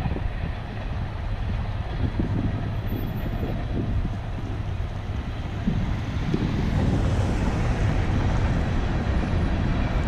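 BNSF coal train rolling past: a steady low rumble of the freight cars that grows louder over the last few seconds.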